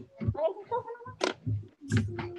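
Short fragments of voices over a video-call connection, with a couple of sharp clicks.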